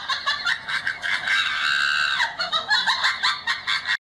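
Shrill, rapid cackling laughter in quick honking bursts, thin and tinny, with one longer held squeal about midway.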